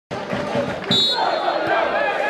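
Referee's whistle blown in one short, shrill blast about a second in to start play at kick-off. Dull thuds come before it, and voices after it.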